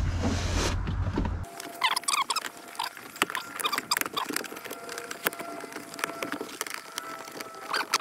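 Hands rummaging among wiring and plastic trim behind a car's glove-box opening: scratchy rustling and many small light clicks.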